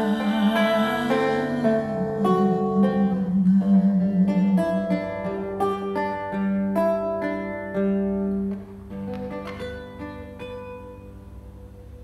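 A man singing long held notes to his own acoustic guitar accompaniment. The voice drops out about eight and a half seconds in, and the guitar goes on more softly and fades away as the song ends.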